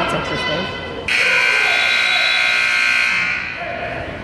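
Scoreboard buzzer in a gym sounding one loud, steady blast of about two seconds, marking the end of the wrestling bout. Crowd voices are heard before it.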